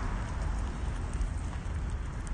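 Wind rumbling on the microphone, with faint footsteps on a concrete sidewalk as the person filming walks.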